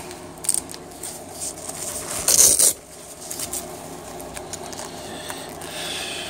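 Nylon tactical vest and pouches being handled: scattered rustling and small clicks, with one louder rustle lasting about half a second a little over two seconds in.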